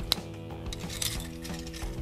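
A single sharp plastic click just after the start as a part of a Transformers Hound action figure is pushed up until it snaps into place, over steady background music.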